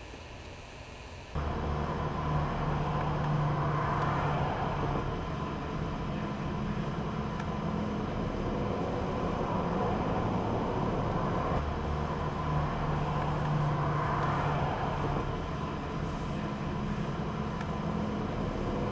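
Motor-vehicle road noise: a steady rush with a low engine drone that sets in suddenly about a second in after faint hum, swelling and easing a little.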